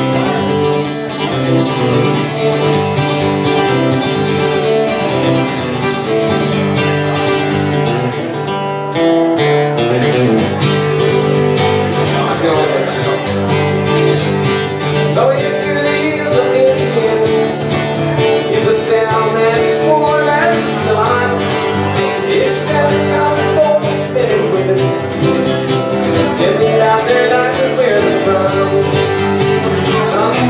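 Acoustic guitar strummed in a steady country-folk rhythm, the opening of a solo song, with chords changing about every second; from about twelve seconds in a wavering melody line rides over the chords.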